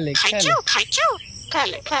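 A pet common myna calling and repeating short mimicked talk, a quick run of harsh, voice-like calls. Two clear calls near the middle rise and fall in pitch.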